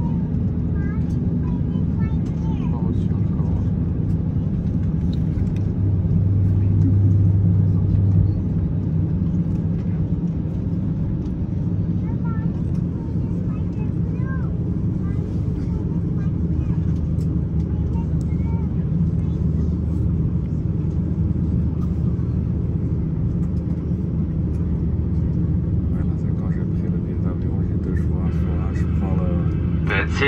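Steady low rumble inside the cabin of an Airbus A350-900 taxiing with its Rolls-Royce Trent XWB engines near idle, swelling briefly about six to eight seconds in.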